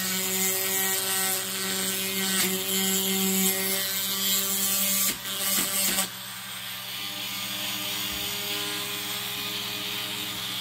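Dremel rotary tool with a grinding bit running steadily as it grinds down the end of a toy truck's metal axle pin. It becomes quieter about six seconds in.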